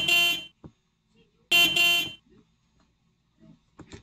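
Two short horn blasts, each about half a second long and about a second and a half apart, as loud as the nearby speech.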